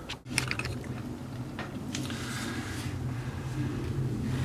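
Handling noise: a few light clicks and some rubbing as a small bent 16-gauge sheet-steel tab is held and positioned against the truck's metal dash, over a steady low hum.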